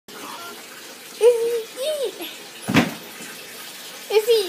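A voice makes two short high-pitched sounds about a second in, then there is a single sharp knock a little past halfway, over a steady hiss.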